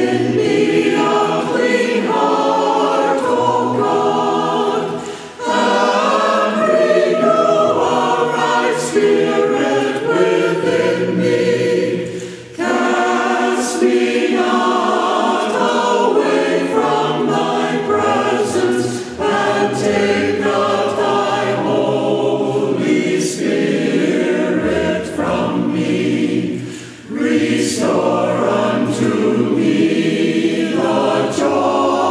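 A church choir singing, in sung phrases with short breaks about five, twelve and a half, and twenty-seven seconds in.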